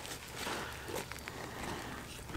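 Faint rustling and handling of a haversack's fabric as the bag is pulled open, with a few soft taps.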